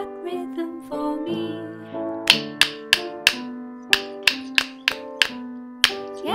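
A children's backing song plays with sustained pitched notes. From about two seconds in, a pair of wooden rhythm sticks is struck together about ten times in a short, uneven rhythm that follows the words.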